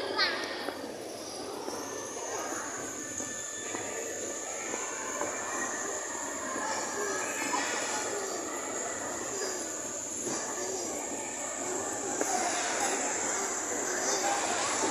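Indoor ice rink ambience: a continuous scraping hiss of ice skate blades gliding over the ice, with faint voices of other skaters and a steady high-pitched tone that comes in about a second and a half in.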